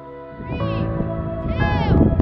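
Children's voices calling out a launch countdown, two high drawn-out calls about a second apart, starting about half a second in, over steady background music.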